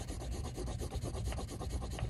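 Pencil shading on drawing paper: many quick, short strokes in a steady run.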